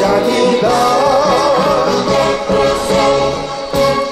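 A man singing a Korean pop song into a microphone, backed by a band with brass and strings.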